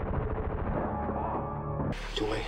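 Movie soundtrack: held music tones over a rapid, continuous rattle of gunfire.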